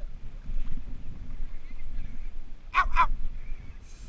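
A low, uneven rumble, like wind on the microphone, runs throughout. About three seconds in, a man cries out twice in pain, "ow, ow", as the hooked bird he is handling hurts him.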